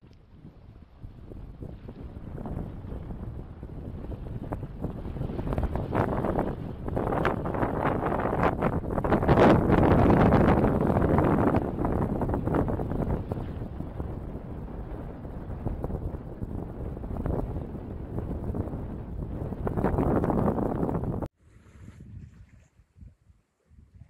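Wind buffeting the microphone over the rush of water past a sailing yacht under way. It swells to its loudest about halfway through and cuts off suddenly near the end.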